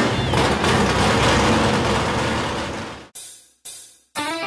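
A car engine revving loudly and fading away about three seconds in, followed by two brief bursts of noise.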